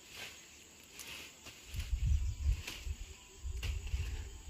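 Faint outdoor ambience with a few soft clicks, then an uneven low rumble on the microphone from about one and a half seconds in.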